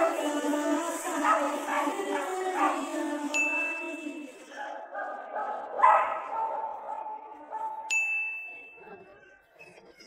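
Music with a melody plays and fades out about halfway through. Two electronic ding tones, each held steady for a second or more, come about three and eight seconds in, with a single dog bark about six seconds in.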